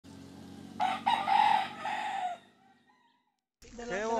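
A rooster crowing once: one long, broken crow starting about a second in and ending a little past two seconds, over a low steady hum.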